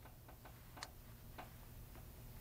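Near silence: room tone with a few faint, unevenly spaced light clicks.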